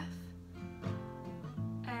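Acoustic guitar playing an F chord: a picked note, then a few strums, the chord left ringing between them.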